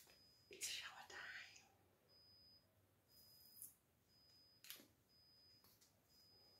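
Near silence: quiet room tone with a few faint whispered, breathy sounds, one about a second in and another about three seconds in.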